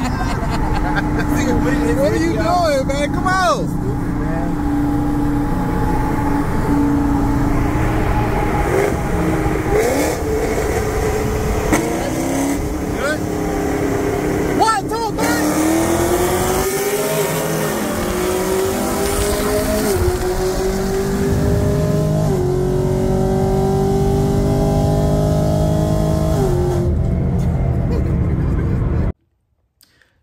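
V8 engine of a 10-speed Camaro heard from inside its cabin, cruising beside a Holden SS, then going to full throttle in a 40 mph roll race: from about 15 seconds in the engine note climbs, drops at upshifts around 20, 22 and 27 seconds in, and climbs again. The sound cuts off suddenly near the end. The owner says this car is down on power, perhaps pulling timing.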